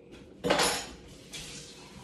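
Dishes clattering in a kitchen sink: a sudden loud clatter of a ceramic mug about half a second in, fading quickly, then a shorter, fainter rush of noise.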